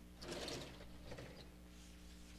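Lecture-hall sliding chalkboard panel being moved along its track: a faint, brief rattling scrape lasting about half a second, with a weaker one a moment later.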